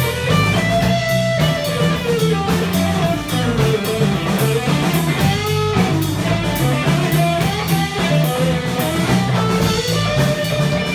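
Live band instrumental passage: electric guitar playing a lead line with bent notes over a drum kit and a low, repeating line of notes.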